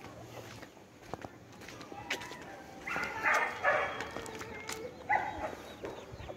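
Dogs barking a short way off: a short run of barks about three seconds in and a single bark about five seconds in.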